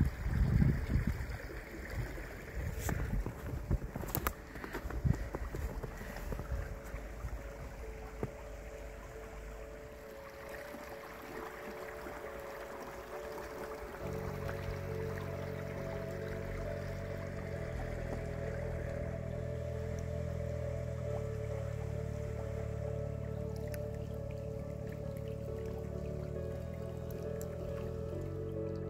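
A small, fast, clear stream running over a shallow bed, with a few knocks in the first five seconds. From about halfway, soft background music of slow, held chords comes in over it.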